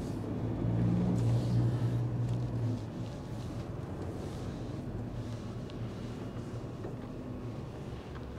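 Lorry's diesel engine heard from inside the cab while driving slowly, with a louder engine note for the first few seconds that then drops to a steady, lower drone.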